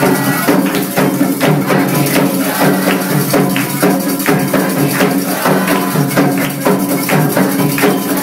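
Candomblé ritual percussion: atabaque hand drums played in a fast, dense, unbroken rhythm, with bright rattling and clicking strikes layered over the drums.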